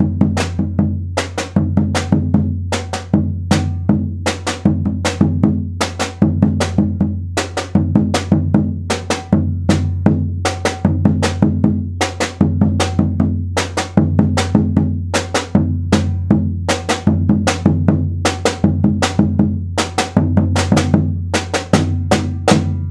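Alfaia, a rope-tensioned wooden maracatu bass drum struck with a beater, and a metal-shelled caixa snare drum played with two sticks, playing an interlocking rhythm together at a fast, steady tempo. The bass drum's deep ringing tone sounds under the crisp, sharp snare hits.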